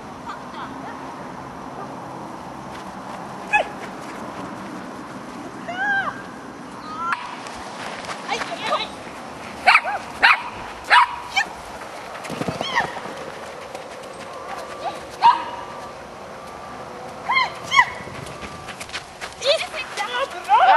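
A dog barking and yipping in short bursts at uneven intervals, a dozen or so through the stretch, loudest around the middle.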